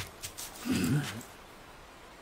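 A short, low, gruff vocal grunt from an anime character, falling in pitch, about a second in.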